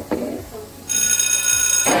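A loud, steady, high-pitched electronic ringing tone, like a phone ringtone, lasting about a second. It starts abruptly a little under a second in and cuts off just before the end. Before it there is a click and a brief voice.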